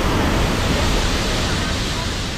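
Steady rush of water from a stream running over boulders in a rocky gorge.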